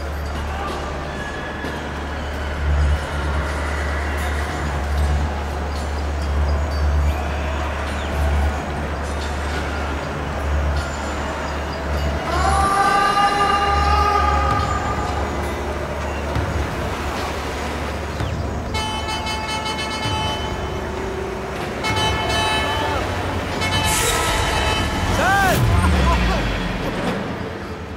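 Steady low rumble with a vehicle horn, likely a lorry's, sounding once about twelve seconds in and holding for a couple of seconds. Further drawn-out pitched tones follow near the end.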